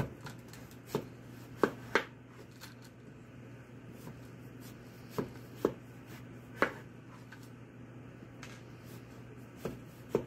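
Large kitchen knife cutting down through a watermelon half, rind and flesh, and knocking on the cutting board: about eight sharp knocks at uneven intervals, the loudest two close together about two seconds in.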